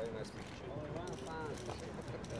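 People's voices talking, with scattered sharp clicks.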